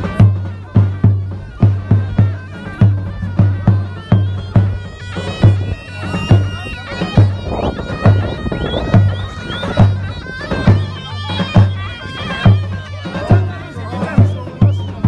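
Festive folk music on a big bass drum and a shrill reed pipe, typical of a davul and zurna: the drum beats a steady rhythm of about three strokes a second, and the pipe plays a wavering melody from about five seconds in until near the end.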